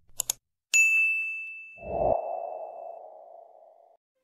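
Sound effects for a subscribe-button animation: two quick mouse clicks, then a bright bell-like ding that rings on for about two seconds. About two seconds in, a low whoosh swells and fades away.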